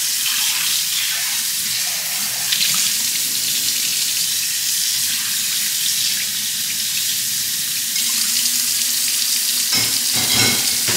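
Kitchen tap running steadily into a stainless steel sink, a constant hiss of water while dishes are rinsed.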